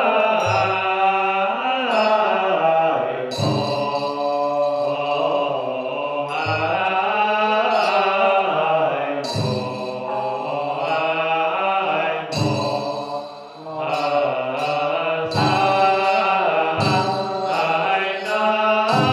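Chinese Buddhist liturgical chanting: voices sing a slow, melodic chant with long held notes that glide up and down, in phrases broken by short pauses about every three seconds.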